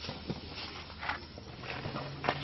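A few short crinkles of thin plastic bags being handled as pastries are passed over, about a second in and again near the end, over faint background voices.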